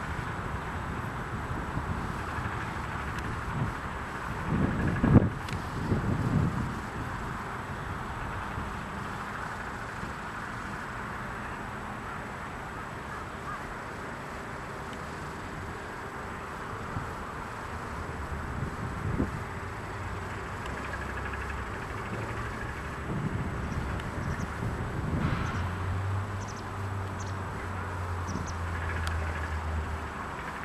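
Outdoor background hiss with wind gusting on the microphone several times. A low engine hum comes in during the last few seconds.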